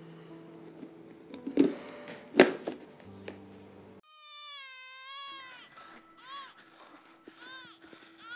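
Soft background music with two sharp clicks about a second and a half and two and a half seconds in. About halfway through, an infant starts crying: one long wail, then short, repeated rising-and-falling cries.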